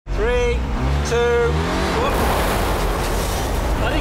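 Ford Bronco's engine running hard with a steady low rumble, joined in the second half by a loud hiss of tyre and road noise. Two long, held vocal exclamations come near the start.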